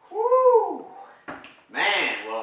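A young child's single high-pitched vocal cry, rising then falling in pitch over under a second, followed by a short knock.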